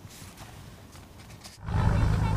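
A quiet pause, then about one and a half seconds in a loud low rumble cuts in abruptly: fishing-boat engines running.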